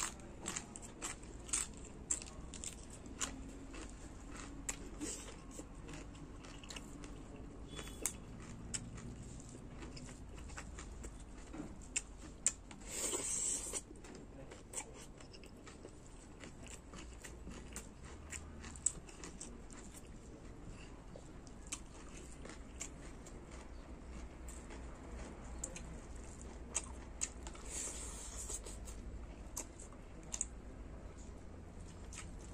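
A person chewing food close to the microphone: moist chewing with many short crunches and clicks of the mouth. About thirteen seconds in there is one brief, louder hiss, and a fainter one near the end.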